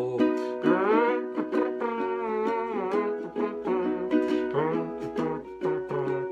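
Lanikai ukulele strummed in a steady rhythm, chords played through an instrumental break between sung verses.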